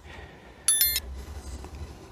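A single short, high-pitched electronic beep about two-thirds of a second in, over a low steady background hum.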